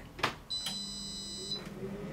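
A tap on the Tefal Easy Fry and Grill XXL air fryer's touch panel, then a high beep lasting about a second as it starts. The air fryer's fan starts under it, a low steady hum with a faint whine rising as it spins up.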